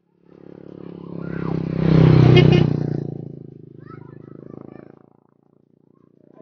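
A motor vehicle's engine passing close by on the road: it grows louder to a peak about two seconds in, then fades away over the next few seconds.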